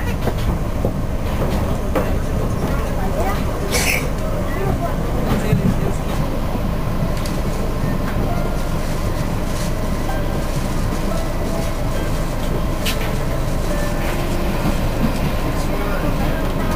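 Steady running noise of a Cercanías commuter train heard from inside the carriage: wheels on the rails at speed, with a couple of brief sharp clicks.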